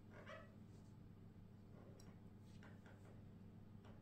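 Near silence: a steady low room hum, with a faint short sound about a third of a second in and a faint click about two seconds in.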